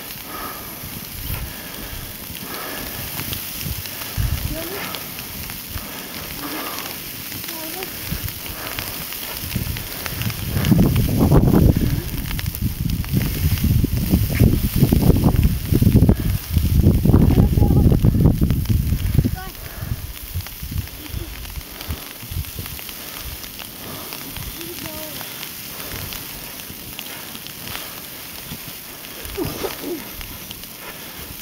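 Footsteps crunching through deep fresh snow, a steady crackle. Midway through, wind on the microphone adds a loud low rumble for about nine seconds.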